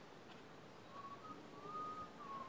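Faint whistling: a few soft notes around one pitch, beginning about a second in, the last one held longer.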